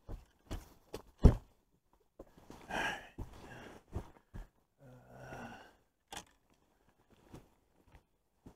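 Handling noise of fishing gear on a boat deck: scattered knocks and clicks, the loudest a sharp thump about a second in. Two breathy sighs around the third and fifth seconds.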